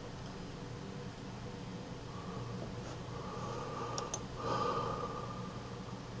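Quiet room with a steady low electrical hum. A faint whine comes and goes in the middle, and there are a couple of light clicks about four seconds in.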